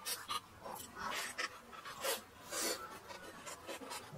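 Close-miked chewing of a crispy fried pastry stuffed with greens: irregular crunches and mouth sounds, several to the second, loudest a little after one second and around two and a half seconds in.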